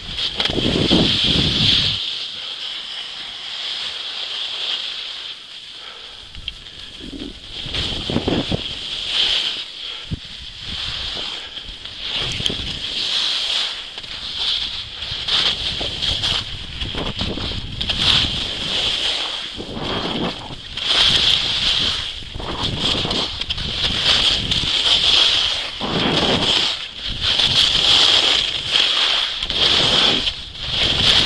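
Skis hissing and scraping over packed snow during a downhill run, the hiss swelling and fading every second or two, with wind gusting on the camera microphone now and then.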